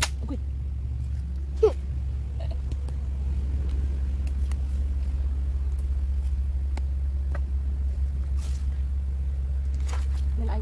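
A steady low rumble, with one short, sharp knock nearly two seconds in.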